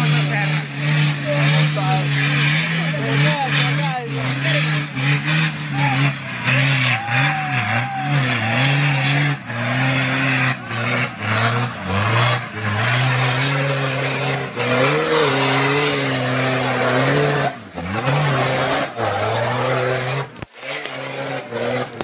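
Off-road 4x4's diesel engine revving hard under heavy load on a steep climb, its pitch rising and falling with the throttle. Thick black smoke shows it is being worked at full load. The engine note falls away near the end.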